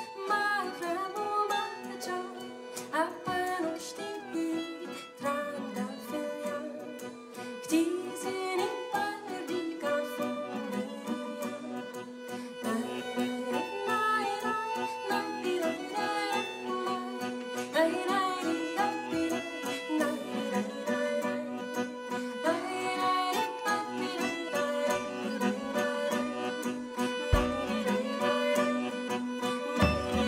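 Live acoustic folk band playing a traditional Greek song: a woman singing over strummed acoustic guitar, with violin and accordion playing along.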